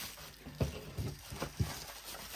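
A handful of light taps and soft plastic rustling as blister-carded diecast toy cars wrapped in bubble wrap are handled and set down on a tabletop.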